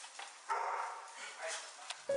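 A dog barking and growling as it jumps and bites at a bag held above it, with people's voices.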